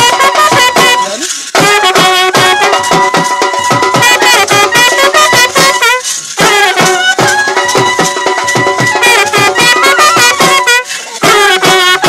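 Loud Indian folk band music: fast drum beats under a sustained, wavering melody line. It breaks off briefly three times.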